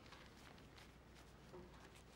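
Near silence, with faint rustling of clothing as a coat and cap are put on.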